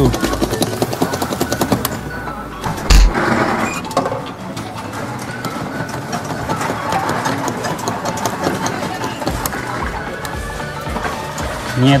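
A claw machine at work: the crane's motor running and the claw moving over plush toys, with arcade background music and many small clicks throughout. A single loud knock comes about three seconds in.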